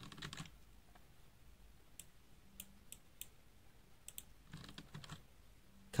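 A few faint, separate computer key presses, spaced out between about two and four seconds in.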